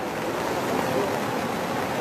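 Strong current of floodwater rushing through a flooded street: a steady, even rushing noise.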